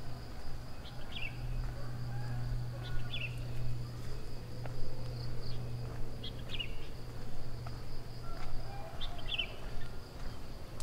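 Tropical outdoor ambience: a steady high insect drone with a bird repeating a short call that drops in pitch, about every two seconds. A low steady hum runs underneath.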